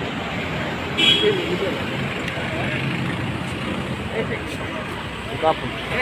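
Cars of a convoy driving past, a steady run of engine and road noise, with people's voices in the background and a short high-pitched toot about a second in.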